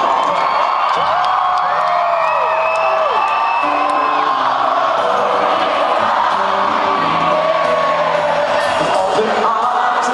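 Rock band playing live at full volume in an arena, heard from within the audience, with crowd whooping and cheering over the music.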